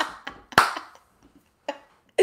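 Two sharp hand claps about half a second apart as laughter dies away, then a faint tap near the end.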